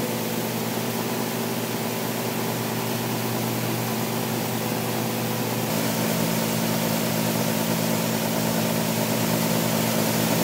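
Grain dryer running with a steady motor and fan hum made up of several low steady tones, as it dries barley seed. The sound grows a little louder about six seconds in.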